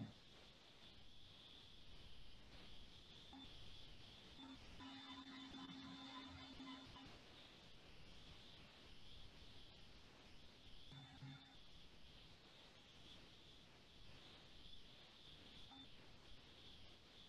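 Near silence: faint room tone with a steady hiss, broken by a few brief faint tones, the longest lasting about two seconds near the middle.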